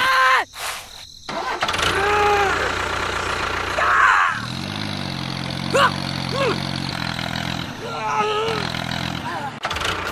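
An engine starts with a low rumble, then runs at a steady pitch for about five seconds with two brief breaks near the end. Short gliding vocal exclamations sound over it.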